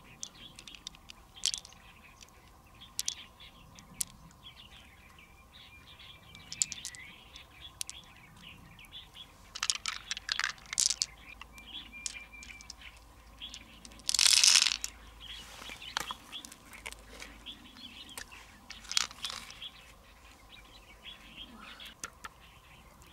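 Close handling of pearls and a large freshwater mussel: scattered sharp clicks of hard pearls tapping together in the hand and against the shell, with a louder, longer noisy handling scrape about fourteen seconds in.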